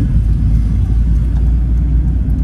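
Steady low rumble of a small manual car's engine and tyres, heard from inside the cabin while it drives along the road.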